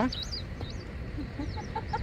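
A few faint, high, wavering bird chirps over a steady low rumble.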